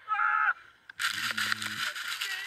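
A short cry, then about a second in a sudden loud rush of wind noise as an avalanche's powder cloud blasts over the microphone, with voices crying out through it.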